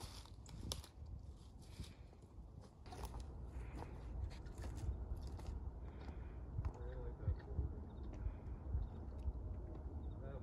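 Footsteps crunching and scraping irregularly on loose rock and gravel, over a low steady rumble.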